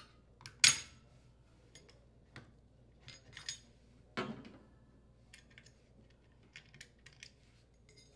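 A flat-head screwdriver releasing the plastic retaining clips of a washer drain pump, then the pump being pulled off the motor shaft: scattered clicks and knocks, the loudest a sharp click about half a second in and a duller knock about four seconds in.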